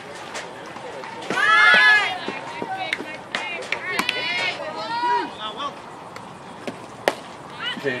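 High young voices shouting and cheering, loudest about a second and a half in and again around the middle. Two sharp smacks, one about halfway through and one near the end.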